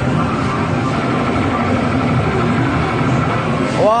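Steady din of an amusement arcade: a dense, loud mix of machine noise and low rumble with faint music from the game machines. A man's short exclamation comes in near the end.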